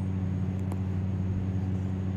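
A steady low hum with no change in pitch, and one faint click about two-thirds of a second in.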